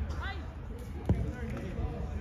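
A soccer ball kicked once on a grass pitch: a single sharp thud about a second in, the loudest sound here, among players' short calls.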